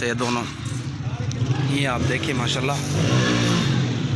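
A man's voice in short, indistinct phrases over a steady low motor-like hum.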